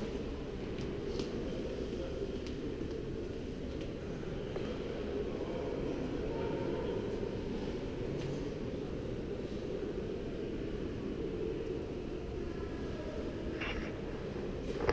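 Steady low rumble of room noise in a large museum hall, with a few faint clicks.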